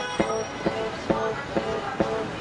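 A steady rhythm of sharp strikes, a little over two a second, each with a short ringing pitch.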